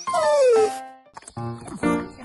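A short dog-like yelp that falls in pitch over under a second, then cheerful background music with a steady beat starting about halfway in.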